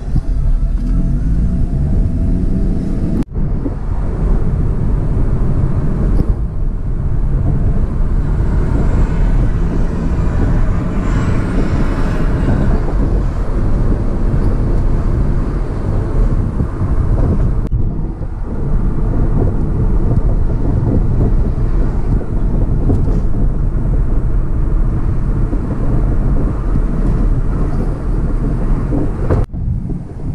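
Steady road and engine rumble of a car driving through city streets, heard from inside the cabin, broken by a few sudden brief dropouts.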